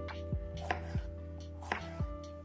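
Kitchen knife cutting through a bell pepper on a cutting board: two sharp cutting strokes about a second apart, over background music with a steady beat.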